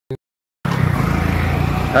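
Road traffic: a steady low engine rumble of passing vehicles, cutting in abruptly about half a second in after a short click.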